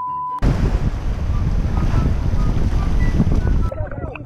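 Wind buffeting the microphone over the rush of surf, a loud steady rushing that starts abruptly about half a second in, just as a steady high tone cuts off, and runs until shortly before the end.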